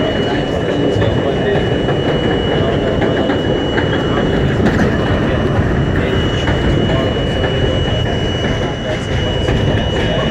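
R42 subway train running on elevated track, heard from inside the front car: a steady rumble and rattle of wheels on rails, with a steady high-pitched tone over it.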